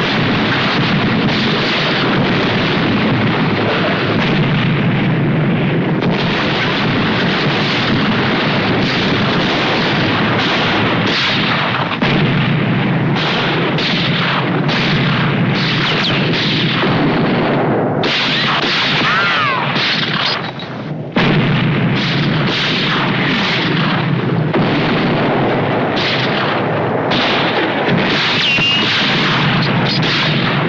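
Battle sound of a siege bombardment: a continuous din of cannon blasts, explosions and gunshots, one report after another with no pause. A few brief high falling tones cut through about two-thirds of the way in.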